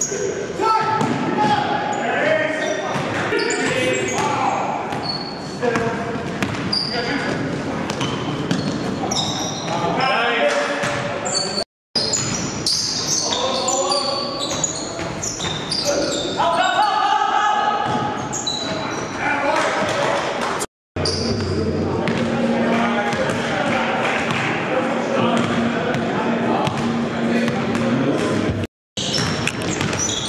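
Live sound of a basketball game in a gymnasium: a basketball bouncing on the hardwood court, sneakers squeaking in short high chirps, and players calling out, all echoing in the hall. The sound breaks off for an instant three times.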